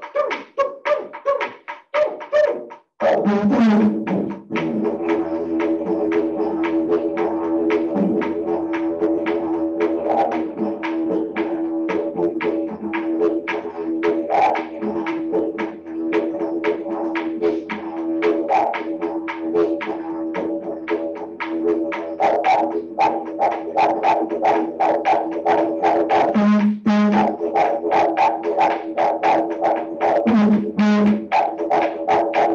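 Didgeridoo playing a steady drone broken into fast rhythmic pulses. The drone drops out briefly about three seconds in, then carries on.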